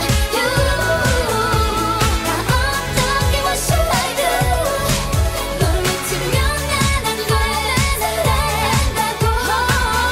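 K-pop dance-pop song: female vocals singing over a steady, evenly repeating drum beat.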